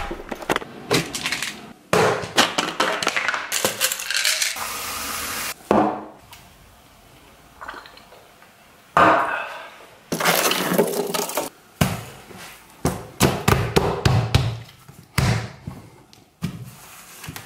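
Kitchen handling sounds: glassware clinking and knocking on a counter, a brief steady hiss about four seconds in, then a quieter stretch and a busy run of knocks and clatters.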